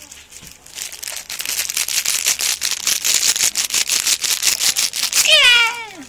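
Plastic being crinkled close to the microphone for several seconds, a dense irregular crackle. Near the end, a baby's short squeal that falls in pitch.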